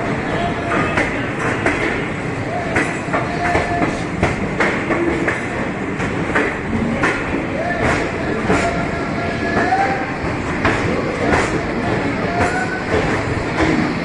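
Jhelum Express passenger train rolling slowly through a station, heard from aboard: a steady rumble with irregular clicks of the wheels over rail joints and points. Voices from the platform come and go over it.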